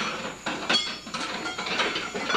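Hand tools working on a car: irregular metal clinks and clanks, several with a brief high ring.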